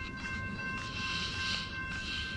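CSX freight train passing: a low rumble of locomotives and wheels on rail, with scattered clacks and steady high ringing tones over it.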